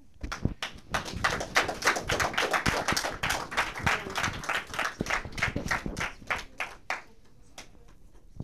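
A small audience clapping: dense, irregular claps that build about a second in and die away near the end.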